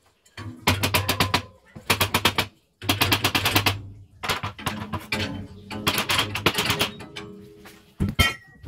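Rapid metallic rattling and knocking in about six short bursts with brief pauses, from the sliding window frame being shaken and worked loose by hand.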